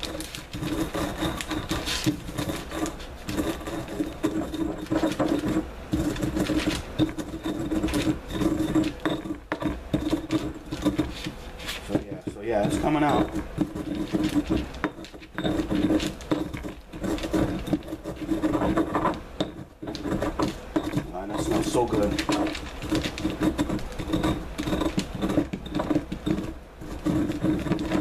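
Dried corn kernels being ground in a volcanic-stone molcajete: the stone pestle is pushed and turned against the bowl in repeated strokes, crunching and grating the kernels into coarse cornmeal. A steady low hum runs underneath.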